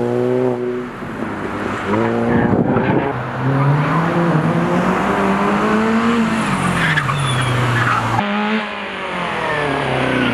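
Hatchback race car's engine revving hard through a slalom course, its pitch climbing and falling as the driver works the throttle, with tyres squealing at moments. About eight seconds in the sound changes suddenly to another car's engine revving.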